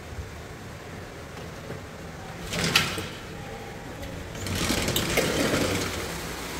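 Heavy, non-stop rain falling steadily, heard from indoors through a window. A brief clatter comes a little before the midpoint, and near the end the sound grows louder as the sliding window is opened.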